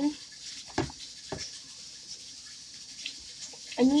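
A spoon stirring in a pot of sauce, with a few sharp knocks against the pot about a second in, over a faint steady hiss.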